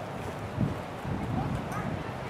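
Murmur of people talking, with a dull thump about half a second in and a few faint, short rising high sounds later on.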